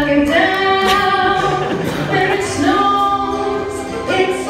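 A woman singing with music, holding long notes and sliding between pitches.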